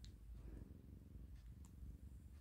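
A resting cat purring faintly: a low, even rumble, with a couple of faint clicks.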